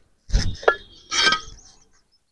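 Fired clay brick tiles and a steel mason's trowel knocking and clinking together as bricks are handled during laying. A dull knock comes first, then a sharp click, then a ringing clink about a second in.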